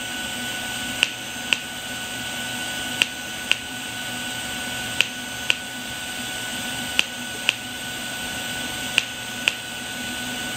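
TIG welding arc from a Canaweld TIG AC/DC 201 Pulse D running with a steady hiss and a faint whine, pulsing at its slowest setting of 0.5 Hz. Every two seconds there is a pair of sharp clicks half a second apart as the current switches between the pedal's peak and the 65-amp low end.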